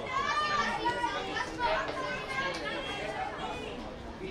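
Several voices of spectators and young players chattering and calling out at once over a youth football match, none of them clear.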